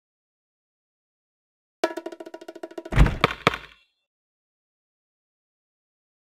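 Cartoon game sound effects: a quick run of short pitched blips lasting about a second, then three deep thumps about a quarter second apart as the basketball bounces.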